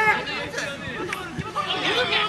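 Several men's voices chattering and talking over one another.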